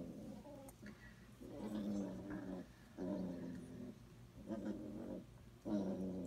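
Five-week-old basset hound puppy growling, about four short low growls one after another.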